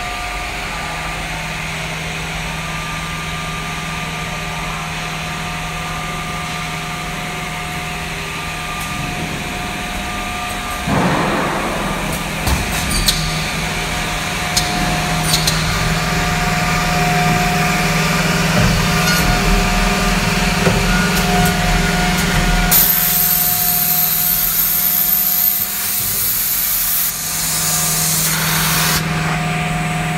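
S8 S468JP automatic edge banding machine running, a steady hum with a few whining tones from its motors. About a third of the way in it grows louder and rougher with scattered clicks, the sound of its cutting and trimming units at work.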